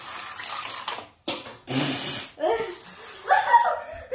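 Two short rushes of hissing noise in the first half, then a brief voice-like sound near the end.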